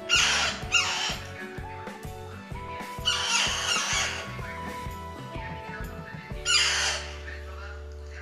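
Background music with a steady beat, over which baby parrots give loud squawks three times: at the start, around three seconds in, and near the end, begging while being spoon-fed.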